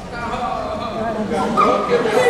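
Human voices making wordless, whining vocal sounds that waver up and down in pitch, ending in a longer held note.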